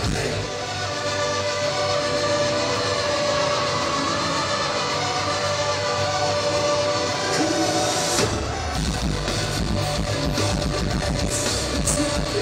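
Live metalcore band playing loud through a venue PA, heard from the crowd. For about the first eight seconds it is a held electric guitar passage with no drums or bass, then the full band with drums and bass comes in.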